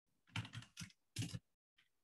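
Typing on a computer keyboard: two short runs of keystrokes with a brief pause between them.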